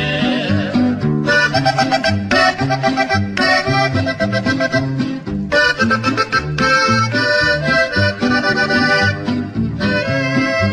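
Instrumental passage of a norteño corrido: a button accordion plays the melody in short phrases over a steady alternating bass accompaniment.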